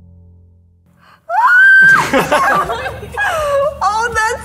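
A low music drone fades out, then about a second in a woman lets out a loud, high-pitched squeal of excitement that rises, holds and falls, breaking into laughter and more excited squeals.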